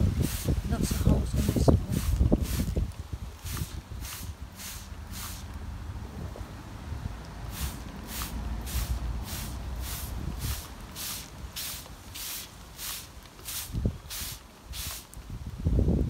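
A hand-held trigger spray bottle squirting in quick repeated bursts, about two to three a second, in two runs with a pause of about two seconds around the middle. Wind buffets the microphone, heaviest in the first few seconds.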